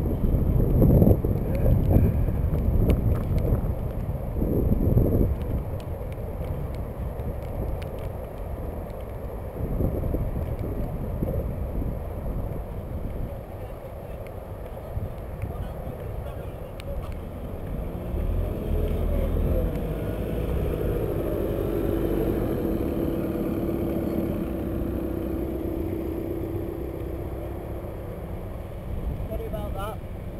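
Wind buffeting the microphone of a camera on a moving bicycle, gusty and loud for the first few seconds, then settling into a steadier rumble. In the second half a steady engine hum comes in as the bike nears a parked van and backhoe loader.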